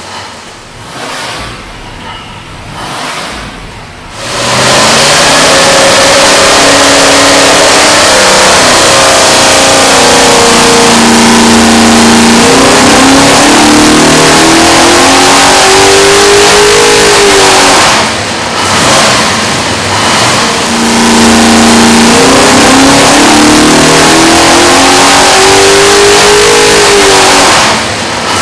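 A 665 cubic inch (10.9 L) big-block Chevy stroker V8, carbureted and naturally aspirated, running on an engine dyno through open four-into-one dyno headers. It runs quieter for about four seconds, then makes a very loud dyno pull at full throttle: the note holds steady, then climbs in pitch as the revs rise, and drops off about eighteen seconds in. After a brief lull a second pull climbs the same way and ends near the close.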